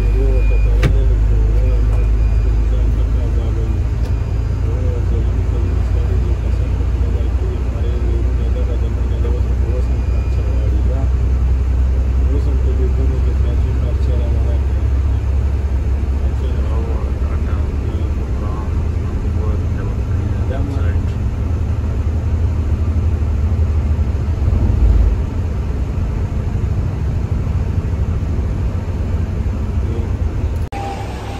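Steady low rumble of a coach bus's engine and tyres at motorway speed, heard from inside the cabin, with indistinct voices under it. A brief low thump comes a few seconds before the end.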